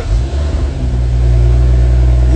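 Car engine revved as the gas pedal is pressed, its low rumble rising over the first second and then held at a steady higher speed.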